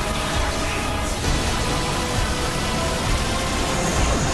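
Background music with steady held notes over a continuous rushing, hiss-like noise. The noise is the sound effect of a blast in an animated fight.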